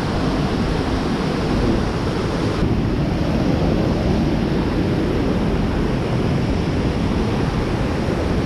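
River water rushing over rocks and small cascades, a steady loud noise that turns slightly duller about two and a half seconds in.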